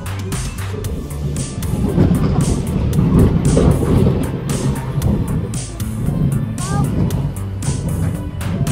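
Fairground music with a steady beat, over the low rumble of a small roller coaster's cars running along the track. The rumble is loudest in the middle.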